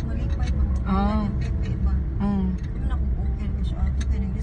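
Steady low rumble of a car's engine and tyres heard from inside the moving car's cabin, with a voice coming in briefly twice, about one and two seconds in.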